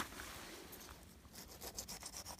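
Faint rustling of pine needles and dry plant stems being brushed by a hand, with short dry crackles coming quicker in the second half.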